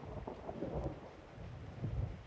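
Rain falling with a low, steady rumble of thunder.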